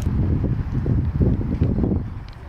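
Wind buffeting the microphone: a low, gusty rumble that rises and falls unevenly.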